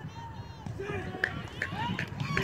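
Several people's voices calling out over one another on an open ball field, growing busier toward the end, with a couple of short sharp clicks about halfway through.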